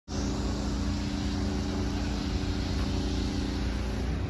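Steady mechanical hum at a constant pitch over a low rumble, with no change through the whole stretch.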